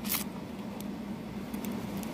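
Paper coin-roll wrapper crinkling faintly as nickels are pushed apart inside the opened roll, with a short crinkle just at the start and a few faint ticks after it, over a steady low hum.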